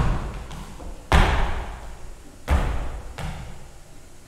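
Thumps beaten out to mimic a march's bass drum and side drum: heavy thumps at the start, about a second in and about two and a half seconds in, with lighter knocks between them.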